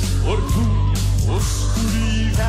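Live rock band music with a drum kit keeping a steady beat under bass and electric guitar.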